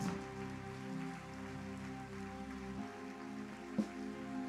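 Soft sustained keyboard chords that shift a little under three seconds in, over a faint, even patter of a large crowd clapping.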